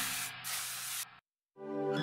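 Hissing whoosh at the tail of a TV show's ident music, cut off just over a second in to a moment of dead silence; guitar-led music then fades back in near the end.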